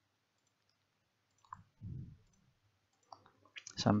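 Computer mouse clicks: a faint click about one and a half seconds in and a few sharp clicks near the end, with near silence between.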